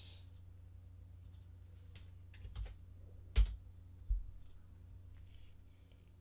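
Scattered clicks of a computer mouse and keyboard, a handful over several seconds, the loudest about three and a half seconds in, over a steady low hum.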